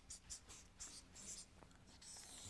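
Felt-tip marker writing on flip-chart paper: a quick run of faint, short strokes as the word is written.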